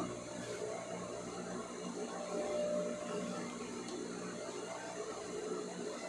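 Faint rustling of a cotton patchwork rug as hands smooth it and slide it across a table, over a steady low hum.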